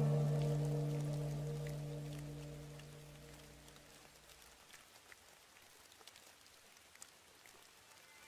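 A low sustained note from soft music rings out and fades away over about the first four seconds. It leaves faint light rain, with scattered drops ticking.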